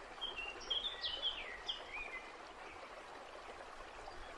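A songbird sings a quick phrase of short whistled notes, some sliding down in pitch, in the first half, over the steady rush of a flowing stream.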